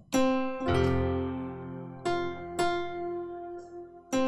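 Keyboard playing piano-tone chords of a worship song's progression: a chord struck right at the start, a low bass note joining just under a second in, then two more chords about two and two-and-a-half seconds in, each left ringing to die away.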